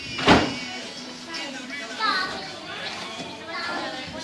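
Young children's voices chattering and calling, with one sharp, loud thump about a third of a second in.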